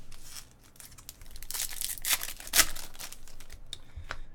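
A 2018 Topps Finest baseball card pack being torn open by hand, its wrapper crinkling in a few rustling bursts, with the loudest tear about two and a half seconds in.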